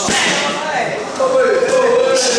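Kicks smacking into Muay Thai pads: one sharp strike at the start and another near the end, with a long, drawn-out vocal call held in between.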